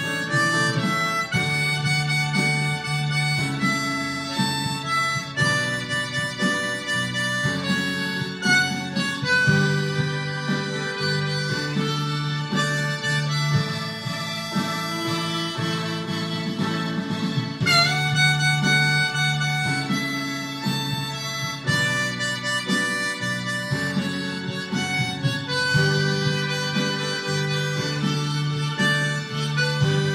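Diatonic harmonica in A playing a song melody note by note over a recorded musical backing track, in twelfth position.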